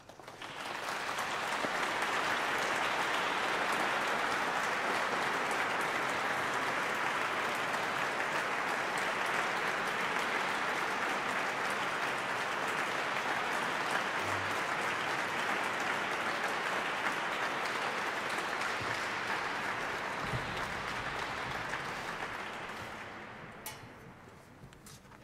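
Audience applauding. The applause swells up in the first second or two, holds steady, then dies away near the end.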